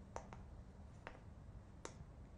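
Faint, sharp clicks over quiet room noise with a low steady hum: two close together just after the start, one about a second in and one near the end.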